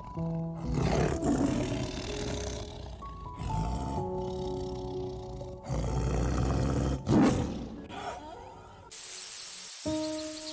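Tiger growling and roaring in several drawn-out rumbles over soft background music with held notes. The loudest roar comes about seven seconds in, and the growls stop shortly before the end, leaving the music under a steady high hiss.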